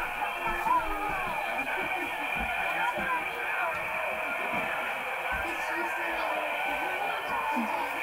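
Indistinct voices with some music, played back through a small television speaker and re-recorded, sounding thin and muffled.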